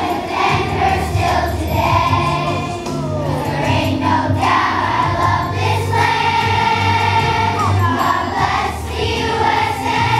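A large group of young schoolchildren singing together as a choir over an instrumental accompaniment with a steady bass line.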